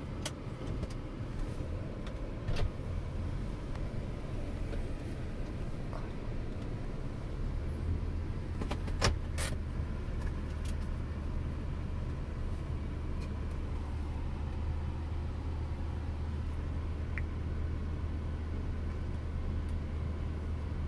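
Car idling, heard from inside the closed cabin with the air conditioning running: a steady low hum that grows a little stronger about seven or eight seconds in, with a few light clicks.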